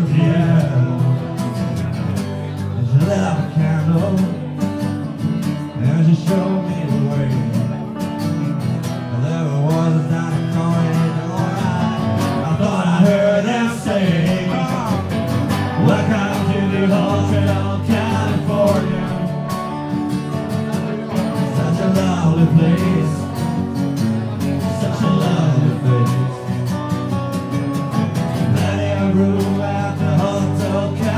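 Live acoustic guitar music with singing: a country-style song played by a small troubadour act.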